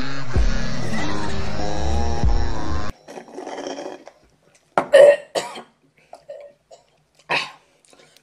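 Music playing that cuts off suddenly about three seconds in, followed by a few short, scattered vocal sounds like coughs and throat clearing.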